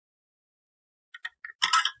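About a second of silence, then a few light clicks and a short metallic clatter near the end, as a screwdriver finishes tightening a CPU tower cooler's mounting screw.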